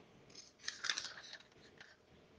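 Faint short rustling noises, several in a cluster from about half a second in until near the end.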